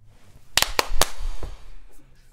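A quick run of four or five sharp cracks, about half a second to a second and a half in, with a low rumble under them.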